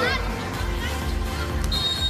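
Background music with a steady low beat, faint voices under it, and a thin high steady tone starting near the end.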